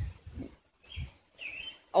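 A couple of faint, short bird calls over quiet outdoor background, in a pause between speech.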